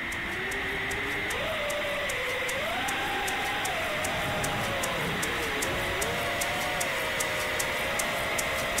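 A 5-inch FPV quadcopter's brushless motors on Gemfan Windancer 5042 props and a 5S lipo, whining and sliding up and down in pitch as the throttle changes, with a steady high tone over it. Background music with a steady ticking beat runs alongside.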